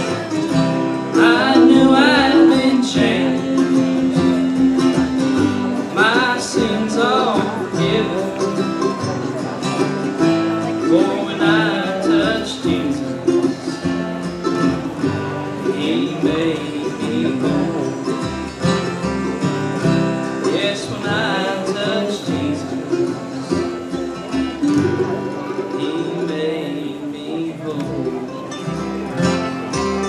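Live bluegrass gospel band playing a song: strummed acoustic guitars over a plucked upright bass, with a lead melody line on top.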